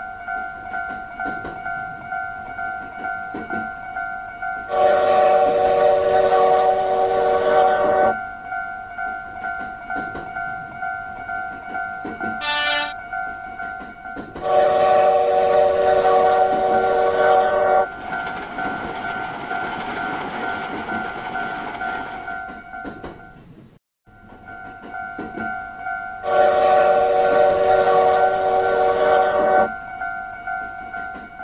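A railroad-crossing warning bell dings steadily. Three long train horn blasts, each a chord of several tones held about three seconds, sound over it about five, fifteen and twenty-seven seconds in. A short high whistle comes just before the second blast, and a train goes by with a rushing noise after it; the sound cuts out for a moment near twenty-four seconds.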